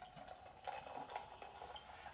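Carbonated tonic water poured from a small glass bottle over ice in a glass: a faint trickle and fizz with a few light ticks.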